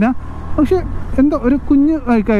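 A man's voice talking over the steady low rumble of a motorcycle engine and wind noise while riding in traffic.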